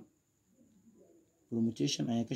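Near silence for about a second and a half, then a man's low voice starts again near the end.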